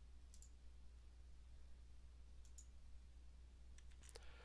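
Near silence with a few faint computer mouse clicks: a pair about a third of a second in, another pair past the middle, and one just before the end.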